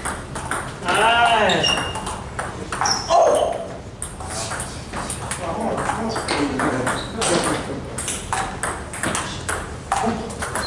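Table tennis balls clicking off paddles and tables, a scattered run of light ticks from rallies at several tables.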